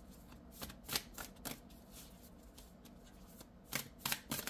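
A tarot deck being shuffled by hand, cards clicking and sliding against each other: several short clicks in the first second and a half, a quieter stretch, then another click near the end.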